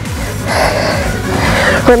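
Electronic workout music with a steady kick-drum beat. Over it, about half a second in, a long breathy exhale into a close microphone from a woman doing a tricep push-up, lasting over a second.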